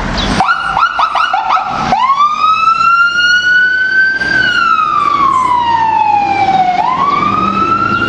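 Fire department command car's electronic siren starting up as it pulls out on a call: a quick run of rapid rising chirps for about a second and a half, then a slow wail that climbs, falls away over a few seconds and climbs again near the end.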